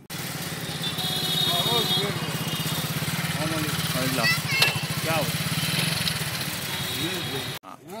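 An engine running steadily close by, with faint voices in the background; it cuts off suddenly near the end.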